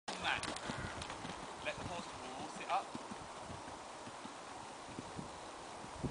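Horse hooves thudding irregularly on the soft surface of an outdoor riding arena, with short bits of voices in the first three seconds.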